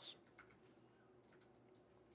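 Faint computer keyboard typing: a few soft, scattered key clicks over near silence as a line of code is typed.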